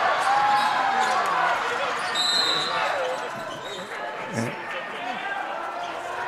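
Gym sound during live basketball play: a crowd of voices murmuring and calling out, with a basketball bouncing on the hardwood court. A short, high sneaker squeak comes a little over two seconds in, and a thud a little after four seconds.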